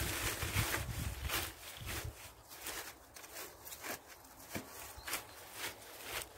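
Spent bean plants, dry stems and leaves, rustling and crackling as they are handled and pressed down by hand. The crackles are busiest in the first two seconds, then come as scattered snaps.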